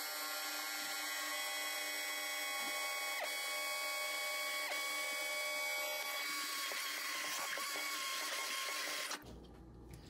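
Handheld stainless-steel immersion blender running with a steady whine as it blends egg yolks and lemon juice while hot margarine is drizzled in, emulsifying a hollandaise. The motor stops about nine seconds in.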